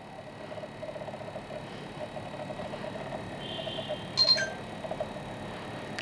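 An HTC Desire HD smartphone's camera app sounding a short electronic tone with a few taps about four seconds in, as video recording starts, over a faint steady hum.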